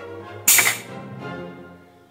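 A short, loud hiss of compressed air about half a second in, from the Stretch Master canvas stretching machine's pneumatic cylinders exhausting air, over steady background music.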